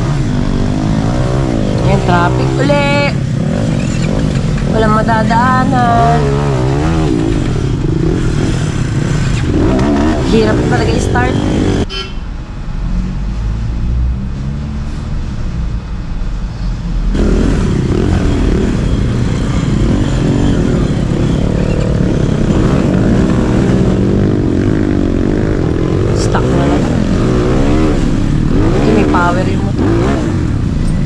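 Off-road motorcycle engines running and revving unevenly on a steep dirt trail climb, with voices calling out over them. The engine sound drops away for a few seconds near the middle, then returns.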